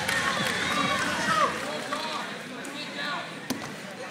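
Indistinct voices of spectators and coaches calling out across a gymnasium, several overlapping at once, with one sharp knock about three and a half seconds in.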